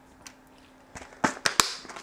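A quick cluster of sharp clicks and taps about a second in: small plastic pin-header sockets being handled and set down on a workbench.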